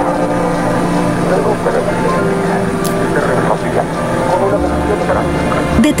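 Steady drone of several held low tones, the ambient sound bed of a TV commercial. A deeper low rumble joins near the end.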